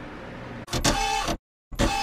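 Faint room tone, then two short electronic sound-effect bursts, each under a second, with a held tone running through them, cut apart by a moment of dead silence.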